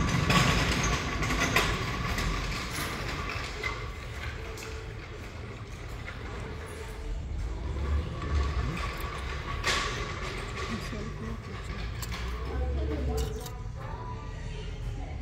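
Indistinct voices over a low rumble of background noise with a faint steady hum, and a few faint clicks from small metal hand tools.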